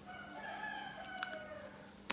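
A faint rooster crow: one long held call that drops slightly in pitch near the end. There is a small click partway through.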